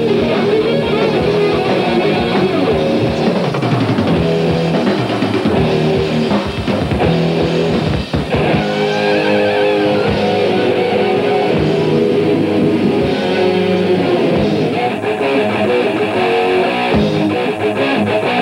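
Doom metal band with heavy distorted electric guitars, bass and drums. There is a brief break about eight seconds in, followed by a wavering bent lead-guitar note.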